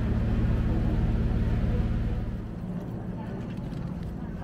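A steady low mechanical hum that grows quieter a little over two seconds in.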